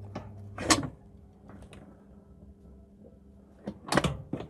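Multi-fuel boiler's metal door shut with a clank about three-quarters of a second in, after which the steady hum of the running boiler falls away. A few further metal clanks come near the end.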